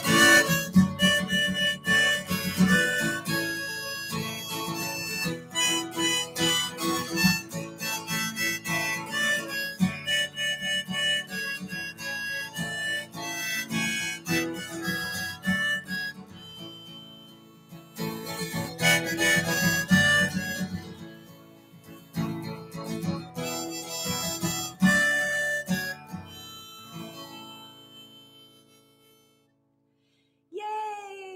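Harmonica in a neck rack played over a strummed acoustic guitar, the instrumental ending of a country/Americana song; the music thins out and dies away in the last few seconds.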